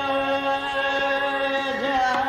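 A male Hindustani classical vocalist holds one long steady note that bends in pitch near the end, over faint tabla strokes.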